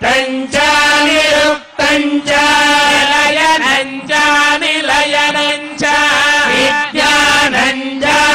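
Hindu priest chanting Sanskrit Vedic mantras in a male voice, holding long, level notes with short breaks for breath every second or two.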